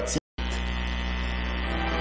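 A man's voice cuts off abruptly, and after a brief dropout a steady low hum sets in, made of several held tones stacked from deep bass upward.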